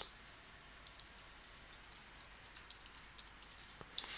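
Computer keyboard typing: a soft, irregular run of key clicks.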